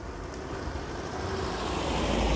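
A car approaching on the road, its engine and tyre noise growing steadily louder.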